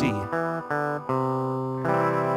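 Guitar playing a walking bass line through a chord progression: single picked bass notes stepping down between strummed chords, a new note about every half second, each left ringing.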